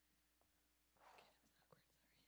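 Near silence: room tone, with a faint breathy rustle about a second in and a soft click just after.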